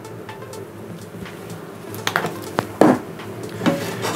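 Soft background music, with a few short knocks from about halfway through as a nonstick frying pan is handled on the hob and lifted.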